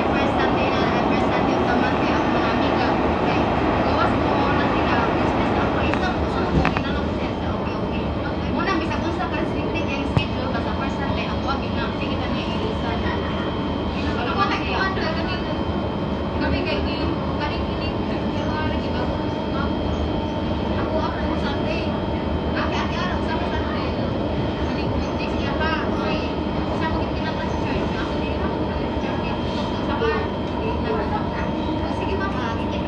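Singapore MRT train heard from inside the carriage, running steadily along the track with a continuous rolling noise and a few steady whining tones. It is a little louder in the first few seconds.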